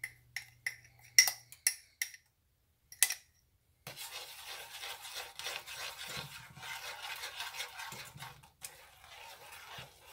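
A spoon clinking in a run of sharp taps against the cup and metal saucepan for the first few seconds, then, after a brief pause, steady scraping as it stirs egg yolks and cornstarch into the hot icing mixture in the saucepan.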